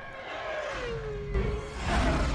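Film sound effect of Boba Fett's ship Slave I flying away, its engine whine falling in pitch. Near the end a loud rushing swell builds up.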